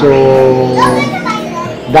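Speech: a man's long, drawn-out "so…" trailing off, with other voices behind it.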